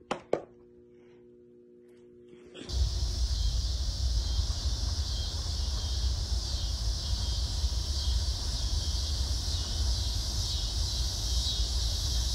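A single sharp click just after the start, then from about three seconds in a steady outdoor ambience: a low rumble underneath and an even high chirring of insects.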